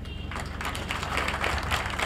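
A crowd clapping in scattered, irregular applause that builds a little after the start.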